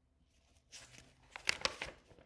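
A paper page of a picture book being turned: a rustle that starts under a second in, with a few crisp crackles as it goes over.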